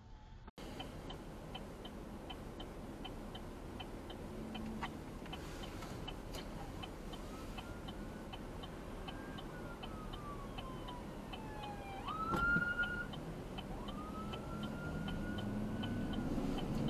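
A police car's siren wailing, its pitch sliding slowly down and then sweeping up, loudest where it rises sharply about three quarters of the way in. It is heard faintly inside the car's cabin over a steady ticking.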